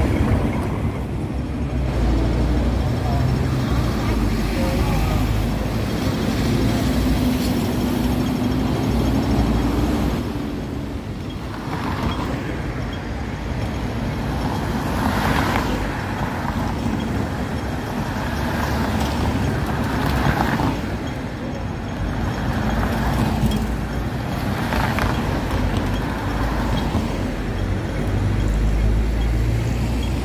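Road traffic on a busy city street: double-decker buses and cars running and passing, a steady low rumble with passing swells.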